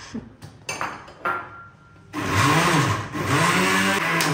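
Small electric countertop blender puréeing pandan leaves with water: a few light knocks at first, then about two seconds in the motor starts and runs in two short goes, its pitch rising as it spins up and falling as it slows, with a brief dip between them.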